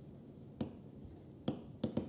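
Pen tip tapping and scratching on a writing surface as a word is handwritten. The clicks are faint and sharp, and two of them come close together near the end as the dots of a colon go down.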